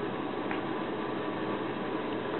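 Steady hiss of background noise inside a vehicle's cabin, even and unchanging.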